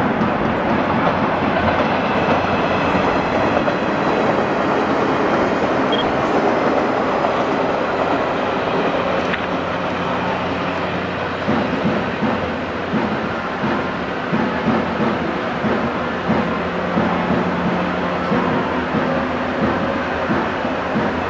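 JR 115-series electric train passing at close range, its running noise continuous and easing a little in the second half as it moves away.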